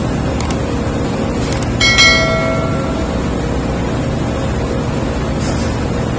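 Steady loud drone of ship's engine-room machinery. About two seconds in, a single metal-on-metal clang rings on for about a second.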